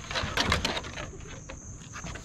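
Basset hounds tussling over a rope tug toy on a wooden deck: a quick run of scuffling and knocking noises in the first second, quieter afterwards.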